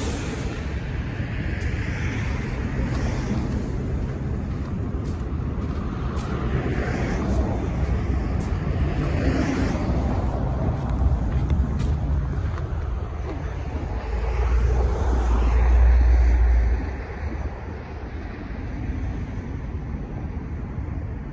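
Steady outdoor rumble of wind buffeting the microphone mixed with road traffic. About three quarters of the way through, a louder low rumble swells for a couple of seconds, then drops away abruptly.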